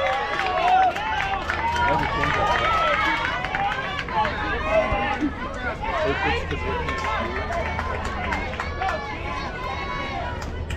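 Many overlapping voices of players and spectators calling out and chattering at a softball field, with a low steady hum underneath.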